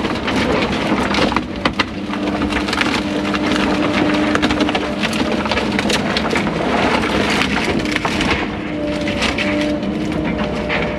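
Excavator engine running steadily with a hydraulic whine that rises and falls, heard from inside the cab, as the bucket grabs and drags broken house lumber, the wood cracking, splintering and clattering many times.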